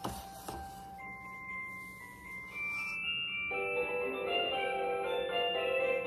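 Hallmark light-up musical snowman-tree decoration being switched on with a couple of clicks. It sounds a few held chime notes, then starts playing a bell-like tune about three and a half seconds in.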